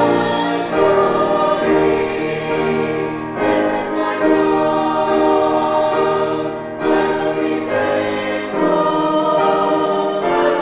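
Small mixed choir of men and women singing a sacred piece with grand piano accompaniment, held notes with short breaks between phrases.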